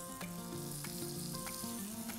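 Rolled chicken breast sizzling gently in hot sunflower oil in a frying pan, just laid in to sear, with a few faint crackles. Soft background music runs underneath.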